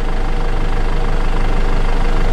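A vehicle engine idling steadily: an even, continuous low drone with a faint steady hum over it.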